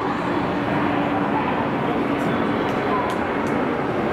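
Electric train running at a station platform: a steady rumble, with a low hum that fades out about halfway through.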